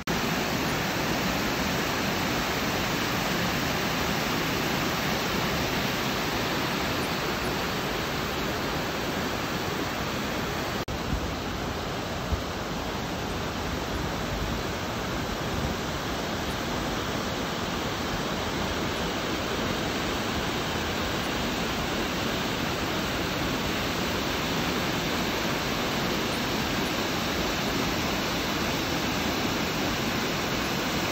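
Waterfall pouring over stepped rock ledges into a pool: a steady, unbroken rush of falling water.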